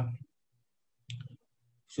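A man's drawn-out "uh" ends, and the call audio drops to complete silence, broken about a second in by one short click.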